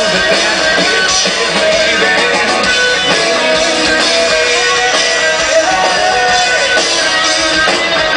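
Live rock band playing electric guitars and a drum kit through a festival PA, heard from within the crowd; the music is loud and steady.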